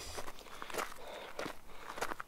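Quiet footsteps, a few soft irregular crunches.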